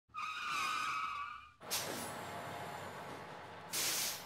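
Vehicle sound effects: a tire squeal with a wavering pitch for about a second and a half, then a sudden rush of vehicle noise, and a short loud hiss of air brakes near the end.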